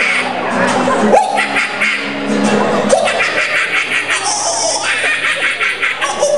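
Acoustic guitar chords under a man's wordless vocalizing, with audience laughter.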